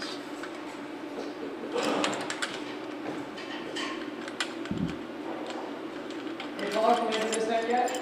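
Aluminum extrusion framing and a gusset plate being handled: light metallic clicks and knocks, with one dull thump about halfway through, over a steady room hum. A voice murmurs near the end.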